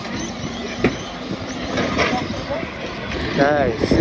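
Steady rumble and road noise of a golf buggy being driven, heard from the passenger seat, with a couple of short knocks. A person's voice comes in briefly near the end.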